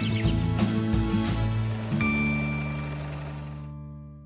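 Closing theme jingle of a TV morning show: upbeat rhythmic music that lands on one held final chord about two seconds in, which then fades away.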